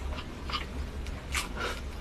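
A few short, sharp crackles of a cooked starfish's hard, spiny skin being pried and broken apart by hand, the loudest about a second and a half in.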